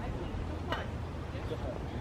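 A single sharp click about a second in from a short golf putt, the putter head tapping the ball, over faint distant voices and a low outdoor rumble.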